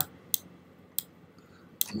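Computer mouse clicking: a few short, sharp single clicks about a second apart.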